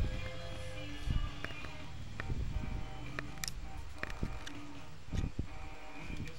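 Electronic musical tones from a handheld calculator, held notes that step from pitch to pitch, with scattered sharp clicks and knocks from keys being pressed and the device being handled.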